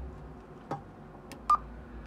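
Stryker SR-655HP CB radio: a button click, then about a second later a short single-tone key beep as a front-panel button is pressed to step through the roger-beep settings.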